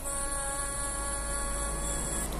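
A steady electrical hum: a held, unwavering tone over a constant low drone.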